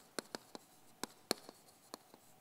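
Chalk on a chalkboard as a word is written by hand: a quick series of sharp ticks and light scratches, about seven strokes in two seconds.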